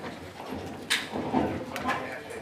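Indistinct voices in the council chamber, with two sharp clicks or knocks: one about a second in and one near the end.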